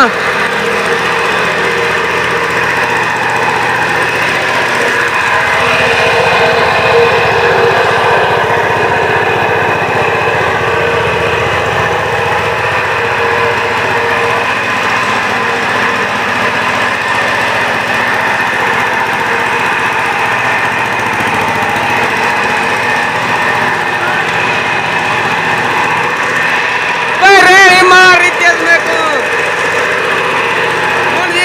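Small walk-behind double-drum vibratory roller running steadily, its engine and drum vibration making a continuous mechanical racket.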